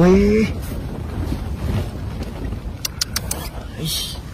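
Steady low rumble of wind and handling noise on the microphone, with nylon tent fabric rustling. A few sharp clicks come about three seconds in.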